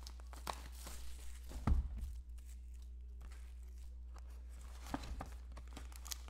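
Cellophane shrink-wrap being torn and crinkled off a cardboard trading-card box, and the box's lid being opened: scattered crackles, with a louder thump nearly two seconds in, over a steady low hum.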